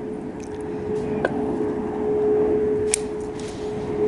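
Bonsai root scissors snipping through the roots of a bare-rooted plum tree, with a couple of sharp snips about a second in and near three seconds. A steady hum runs underneath.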